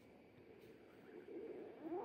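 Human stomach growling after a meal: a low gurgling rumble that swells and ends in a quick upward glide, loudest near the end.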